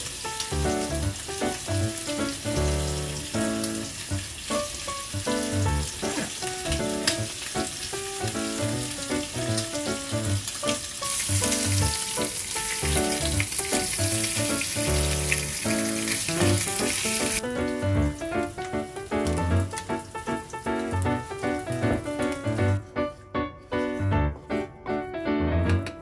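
Food frying in a pan with a steady sizzle, under light background music. The sizzle grows louder for several seconds in the middle, when bacon is frying in a pan on a gas stove.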